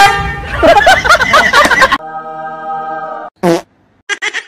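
Dubbed-in music and comedy sound effects: a horn-like blast at the start, about a second and a half of overlapping wavering tones, then a steady horn-like tone and a short falling swoop near the end.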